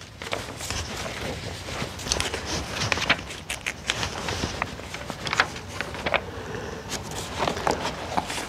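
Pages of an old hardback book being leafed through by hand: a continuous papery rustle with many small crackles and flicks as the pages turn.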